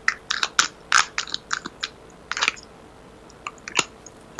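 A deck of tarot cards being shuffled and handled, a quick run of irregular light clicks and flicks of card against card. The clicks are dense in the first two and a half seconds and come back as a few more near the end, heard over a video-call connection.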